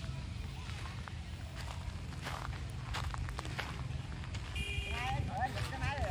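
The small engine of a walk-behind road roller runs with a steady low chug, with crunching footsteps on gravel. Voices come in near the end.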